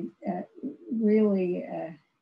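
A woman's voice in halting, effortful speech: a short 'uh' and then a long, drawn-out hesitation sound as she searches for a word, the word-finding difficulty of aphasia after a stroke.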